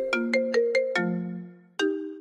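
Mobile phone ringtone: a short melodic tune of bright, chime-like notes, which stops briefly and starts over near the end.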